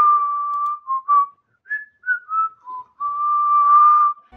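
A woman whistling a short tune through pursed lips: one long held note, a run of short notes at different pitches, then another long held note near the end.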